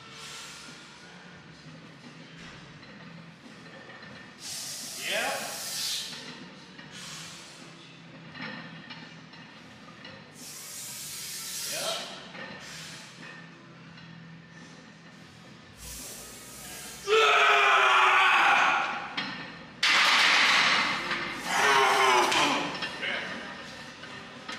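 Heavy barbell back squat set: a powerlifter's forceful breaths and strained grunts on three reps about six seconds apart, then loud shouting as the set ends.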